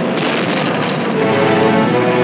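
Continuous rumbling blast sound effect of a rocket launch, with dramatic soundtrack music building in over it from about a second in.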